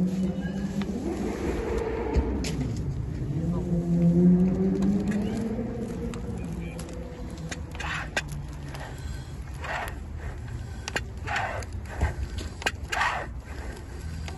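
Floor pump strokes pressurizing a bottle rocket: from about eight seconds in, a short whoosh of air with each stroke, about one every second and a half. Before that, a droning tone that wavers up and down.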